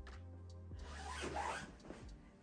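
Fabric rustling and rubbing as a pillow is worked into a pillow sham and handled, faint under background music.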